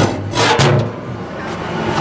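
Pulp fluidizer running with a hard ball of pulp knocking around inside it: a couple of thumps in the first half second, then a steady low machine hum. The ball is bouncing on the toothed drums instead of being grabbed and broken up, like an unbalanced washing machine while it's trying to spin.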